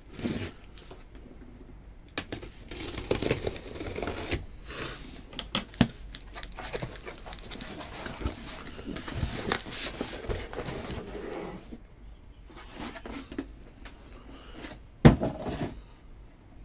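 Irregular rustling, crinkling and tearing of card-box packaging as the sealed case is opened and its boxes handled, with scattered small clicks and one sharp knock about fifteen seconds in.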